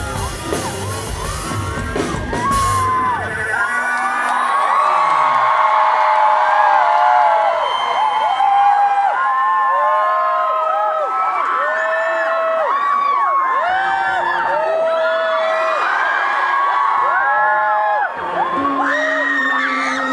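A live rock band playing with drums and bass stops about three seconds in, and a large concert crowd cheers and screams, many high voices overlapping, until the end.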